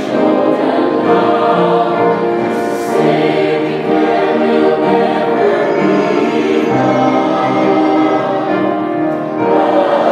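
Mixed church choir singing a gospel anthem in harmony, held chords moving from one to the next every second or so.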